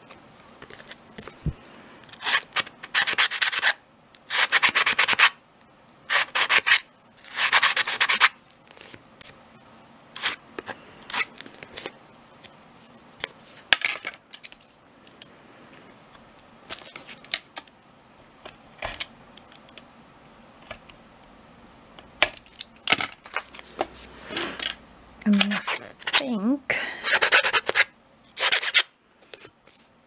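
Small metal nail file rasping along the cut edges of slots in chipboard, in short irregular strokes, cleaning off loose dusty fibres. Longer, louder strokes come in a cluster a few seconds in and again near the end, with brief scrapes between.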